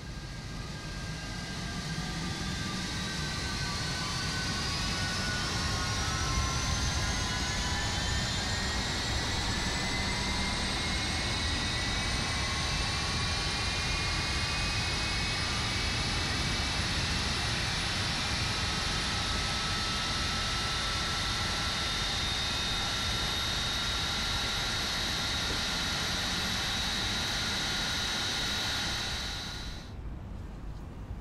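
Jet engine spooling up: a turbine whine of several tones climbs in pitch over about ten seconds over a low rumble, then runs steadily at a high pitch and drops away about a second before the end.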